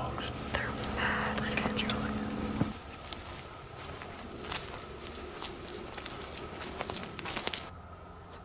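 Hushed whispering over a steady low hum, which cuts off abruptly between two and three seconds in. Then soft rustling and scattered light clicks as a hunter moves on foot, with a denser patch of rustling near the end.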